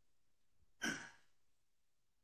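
A single short sigh, a breath of air close to the microphone, a little under a second in.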